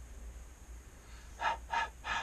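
Felt-tip pen drawing quick strokes on paper, two short scratchy strokes close together about one and a half seconds in, as a capital letter A is written.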